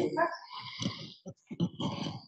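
Indistinct, muffled voice in short murmured bursts, too low and off-microphone to make out words.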